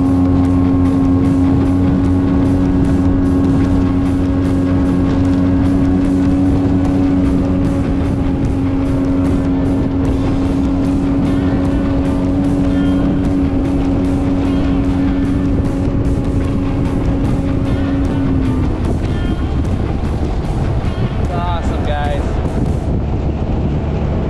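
Jet-drive outboard motor pushing an aluminium jon boat at speed: a steady engine whine over rushing water and wind. About three-quarters of the way through, the steady engine note drops away as it throttles back.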